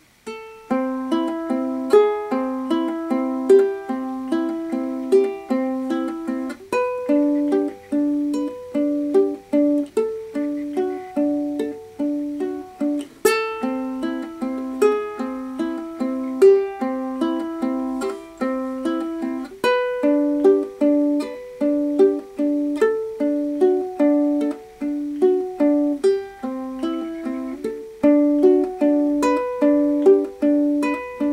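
Solo ukulele fingerpicked, playing an étude in A minor: single plucked notes ring over one another in a repeating arpeggio pattern. The playing starts about half a second in.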